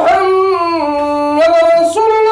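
A man's voice calling the adhan (Islamic call to prayer), chanting long held notes that glide down and then back up in pitch, with a brief breath near the end.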